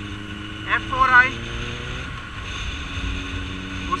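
Suzuki Bandit 1250S's inline-four engine running on the move, with wind rumble on the microphone. Its pitch climbs slowly, then falls back about two seconds in.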